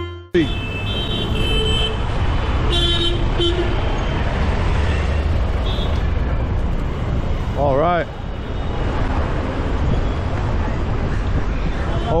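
Busy city street traffic: a steady rumble of passing motor scooters and cars, with a few short horn toots between two and four seconds in and a brief shouted voice about eight seconds in.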